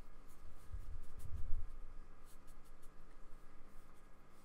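Paintbrush and fingertips rubbing acrylic paint across sketchbook paper: a soft scratchy brushing with a few light ticks. There are low bumps about a second in, the loudest moment, as the hand presses on the pad.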